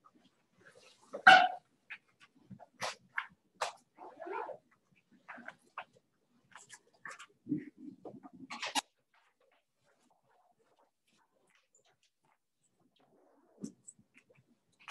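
Scattered handling noises: short clicks, knocks and rustles, the loudest about a second in, dying away after about nine seconds.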